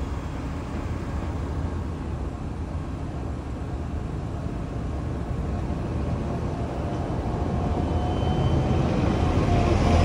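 Steady low rumble of road traffic, growing louder toward the end as a vehicle draws near.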